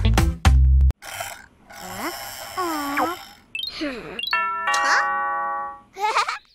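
A children's song with a steady beat cuts off about a second in. Cartoon sound effects follow: short sliding vocal sounds, then a held chime-like tone in the last second and a half.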